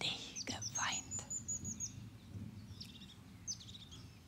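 Small songbirds in a forest: a thin, high run of quickly repeated notes near the start, lasting about a second and a half, then short chirps twice near the end. Soft breathy sounds from a woman's voice come during the first second.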